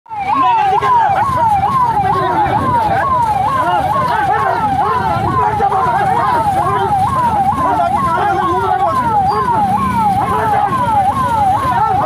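Electronic siren in a quick repeating rise-and-fall, about two cycles a second, held steady throughout, over a crowd's overlapping shouting voices.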